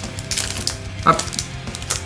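Foil wrapper of a Pokémon card booster pack crinkling and being torn open by hand, in a few sharp crackles, over quiet background music.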